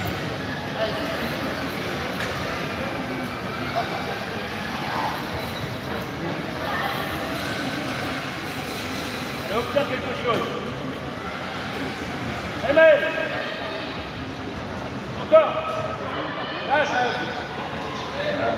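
Voices and shouts of players and spectators echoing in a large sports hall over a steady background hum, with several short, loud calls from about ten seconds in.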